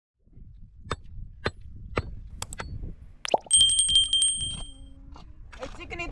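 Steel pick head striking the stones packed around a wooden post: several separate sharp knocks, then a harder strike at about three and a half seconds that leaves a high ringing tone lasting about a second.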